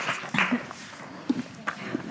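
Audience applause dying away, followed by a few brief scattered voice sounds and small rustles in the hall.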